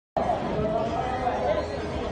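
Indistinct chatter of people talking.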